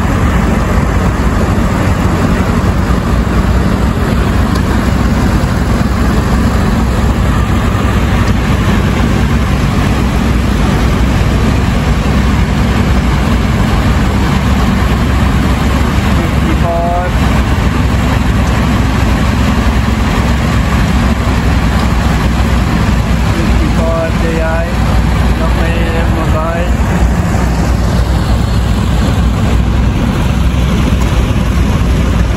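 Engines of several vintage tractors running as they drive slowly past one after another, a steady low engine note with no let-up.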